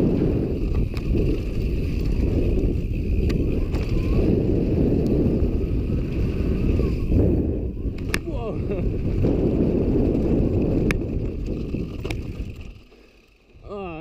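Downhill mountain bike ridden fast over a dirt trail, heard through an action camera's microphone: a heavy rush of wind on the mic and tyre rumble, with sharp clicks and rattles from the bike over bumps. The noise dies away over the last second or so.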